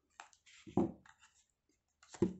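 Faint handling noises of a small plastic shaver body and a screwdriver, with a light click near the start and one short soft knock just under a second in.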